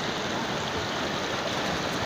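Shallow river rapids: water running steadily over and around rocks.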